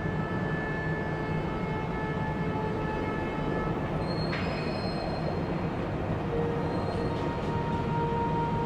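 Soundtrack bed: a steady low rumble under several long, held high tones, which change pitch about halfway through.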